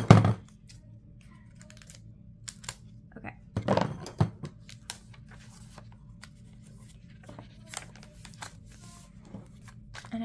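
Clear sticky tape ripped off the roll and torn right at the start, another burst of tearing about four seconds in, and light paper rustles and small taps as planner pages are handled and turned.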